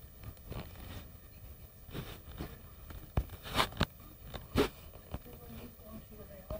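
Irregular soft taps and knocks with some rustling, about seven in all, the loudest about three and a half and four and a half seconds in: handling noise picked up by the tablet's own microphone.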